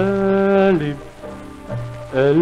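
Arabic music played from a 1940s Alamphon 78 rpm shellac record: a melodic phrase with one long held note through most of the first second, a quieter stretch, then a new note near the end. It runs over the record's crackling surface noise.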